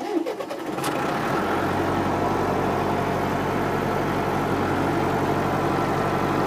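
Tractor engine starting about a second in and settling into a steady idle, heard from inside the cab.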